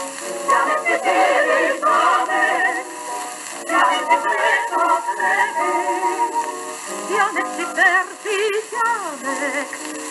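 Old Ultraphon 78 rpm shellac record playing a slow-foxtrot song with vibrato-laden singing, over steady surface hiss and faint clicks.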